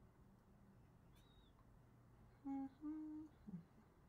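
A person briefly humming two short notes, the second a little higher and longer, a little past halfway through, over near-silent room tone.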